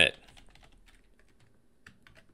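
Computer keyboard typing: a few faint, scattered keystrokes as a word is typed.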